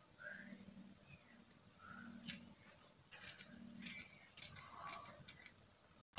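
Scissors cutting through silk fabric: a few faint, quick snips in the second half.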